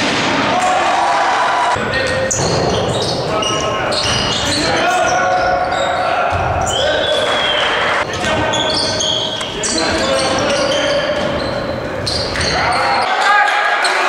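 Live basketball game sound in an echoing gymnasium: a ball bouncing on the hardwood floor amid players' and spectators' voices. The sound changes abruptly a few times where game clips are cut together.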